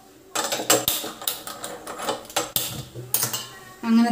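A gas stove burner being lit, with a run of sharp irregular clicks, and a steel saucepan of water clinking as it is handled and set over the flame.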